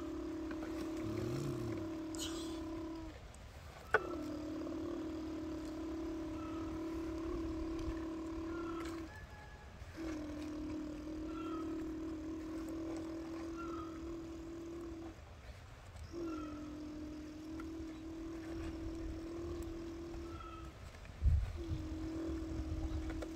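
Toy dump truck giving a steady, even-pitched buzz in stretches of about five seconds with short breaks between. There is a sharp click about four seconds in and a low thump near the end.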